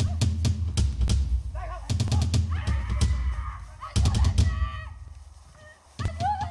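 Film fight sound: a rapid series of sharp hits and thuds over a dramatic music score with a heavy low beat. A voice cries out in the middle. The sound fades down near the end.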